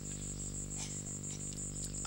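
A steady low hum under a high, evenly pulsing chirp, about five pulses a second, of the kind crickets make.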